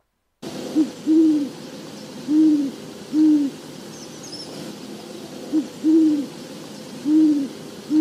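Great horned owl hooting: low, soft hoots in the species' typical phrase, a quick short hoot run into a longer one, then two longer hoots, given twice over a steady background hiss.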